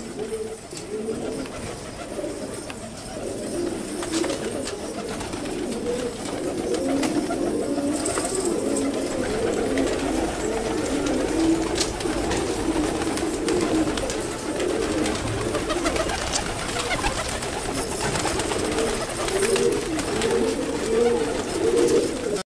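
A flock of fancy pigeons cooing, many birds at once, their calls overlapping and unbroken.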